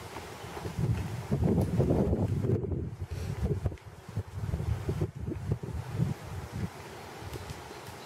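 Wind buffeting the microphone, swelling strongly about a second in and again around five seconds, over the soft hoofbeats of a horse loping on sand.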